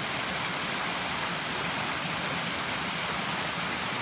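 Steady rushing of a woodland stream, an even wash of running water with no breaks.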